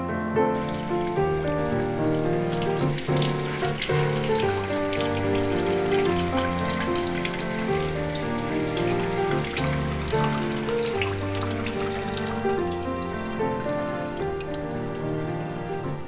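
Water running steadily from a washbasin tap, a continuous hiss, over soft background music with sustained notes.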